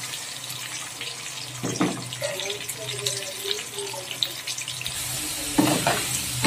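Potato chunks shallow-frying in hot refined oil in a kadai: a steady sizzle, with a wooden spatula stirring them and one brief scrape about two seconds in.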